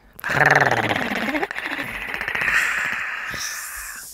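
A long, raspy demonic growl from a cartoon demon, starting suddenly with a low pitched rumble and trailing off into a rough hiss that fades over about four seconds.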